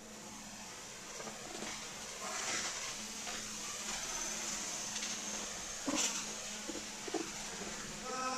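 Quiet scraping and rustling of a large cardboard box being handled and pushed across the floor, with a few short knocks about six to seven seconds in. A steady low hum runs underneath.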